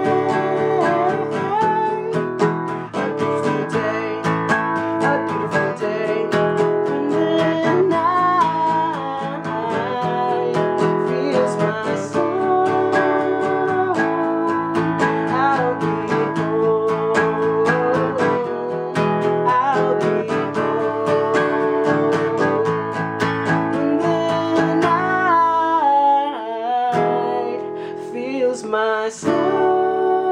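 A man singing along to his own strummed acoustic guitar, holding long wordless notes. Near the end the guitar briefly drops away while the voice carries on.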